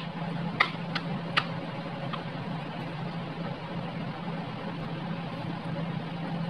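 A metal spoon clicking against the bowl four times in the first two seconds while mixing sushi rice, over a steady low hum.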